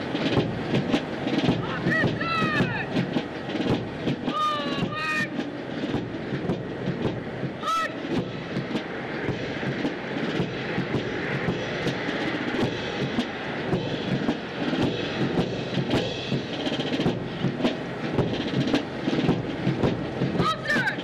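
Marching footsteps on pavement amid a steady murmur of a large outdoor crowd, with a few short voices calling out near the start.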